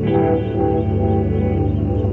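Slow ambient music with layered held notes; a new chord comes in right at the start.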